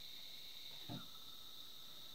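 Quiet room tone between sentences, with a steady faint high hiss and one brief faint soft sound about halfway through.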